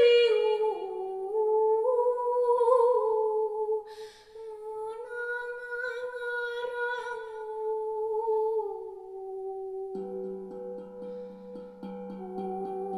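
A woman humming a slow wordless melody in long held notes that drift gently downward, with a breath about four seconds in. Near the end a low ringing note from a steel drum played with mallets comes in beneath the voice, with light rapid taps.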